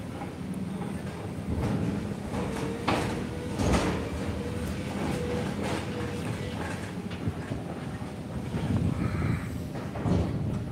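Excavator working at a demolition site: a steady rumble with a faint whine, and two metal clanks about three seconds in.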